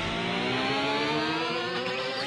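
Logo-intro sound effect: a buzzy tone with a hiss, slowly and steadily rising in pitch.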